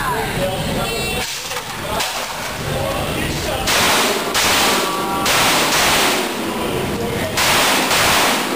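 A shot timer beeps about a second in to start the run. From about four seconds in, a string of handgun shots follows, each one smeared by a long echo off the concrete walls of an indoor range.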